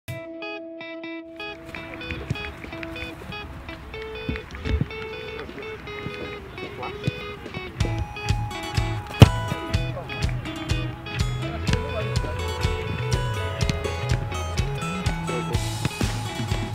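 Background music. It opens with a few sparse high notes, then fills out, and a low bass line comes in about halfway through. A single sharp hit lands a little after the bass enters.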